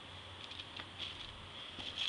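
Faint rustling and a few soft knocks as a cardboard shoebox lid is lifted off and the tissue paper inside is handled, over a steady low hum.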